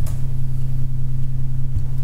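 Steady low background hum with no break or change.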